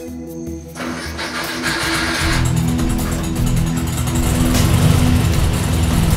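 1966 Volkswagen Beetle's air-cooled flat-four engine running behind a closed garage door, getting louder about two seconds in, with music playing over it.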